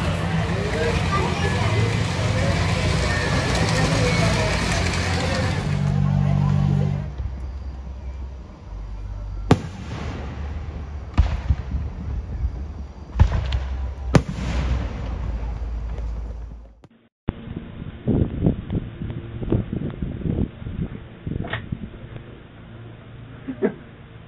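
A three-rail toy train runs along its track over a steady low hum. After a cut, fireworks go off: several sharp bangs a second or two apart, each with a rumble after it.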